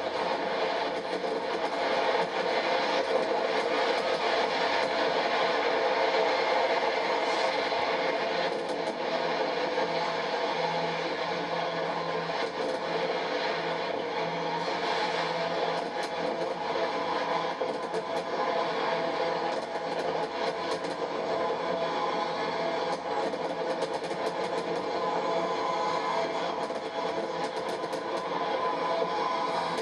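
Fireworks crackling and banging without a break, heard thin and tinny through a television's speaker.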